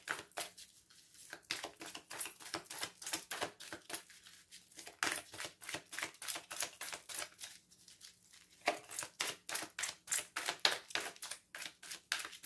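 A deck of oracle cards being shuffled by hand, overhand: a quick run of soft card slaps and rustles, broken by a few short pauses.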